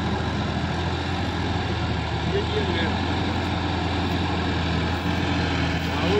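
Sonalika tractor's diesel engine running steadily under load while it drives through a flooded paddy field, pulling a rear implement through the mud, with a constant low engine hum.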